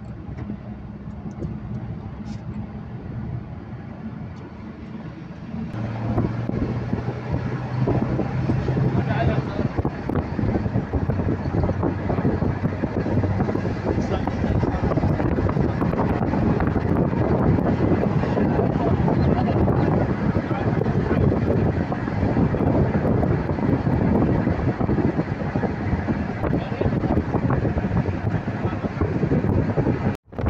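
Inside a moving car: a low engine hum with road noise for the first few seconds, then a louder, steady rush of wind and tyre noise from about six seconds in.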